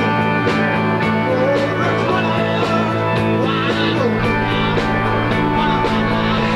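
Live rock band playing an instrumental stretch of a song: sustained electric guitar chords over drums, with drum hits about twice a second.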